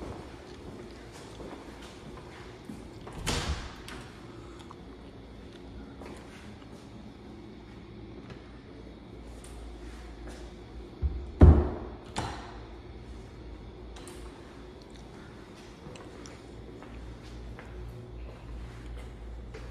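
Steady low room rumble with faint scattered ticks of walking on a tile floor, broken by two louder thumps, one about three seconds in and a louder double thud about eleven seconds in.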